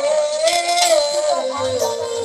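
Violin playing a sliding, ornamented Baul melody with vibrato, over light percussion accompaniment.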